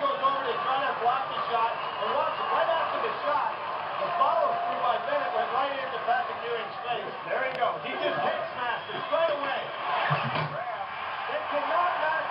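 Men's voices talking over arena crowd noise in a basketball broadcast, dull and cut off at the top as on an old VHS recording. There is a short low thump about ten seconds in.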